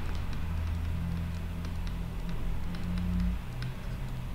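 A low steady hum with faint, light ticks scattered through it, from pen strokes as handwriting is added on the screen.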